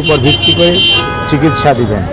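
A man talking into reporters' microphones with a vehicle horn held behind him, a steady multi-tone blare that stops shortly before the end.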